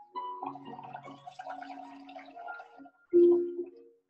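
Bubbling gurgle of air blown through a drinking straw into a paper cup of coloured bubble mixture, with a louder brief tone just after three seconds in.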